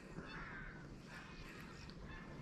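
Faint bird call about half a second in, with a few fainter calls later, over quiet outdoor background noise.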